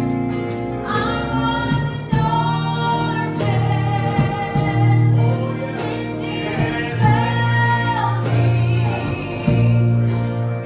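Live gospel song: a man and a woman singing with a small church band of electric guitar, keyboard, bass and drums, with sustained sung notes over a steady bass line and regular cymbal strokes.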